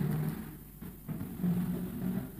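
Faint low hum that comes and goes in short steady stretches.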